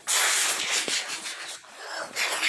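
Cartoon fight-cloud brawl sound effect: a loud, noisy scuffle with rapid hits through it. It eases off about a second and a half in and picks up again near the end.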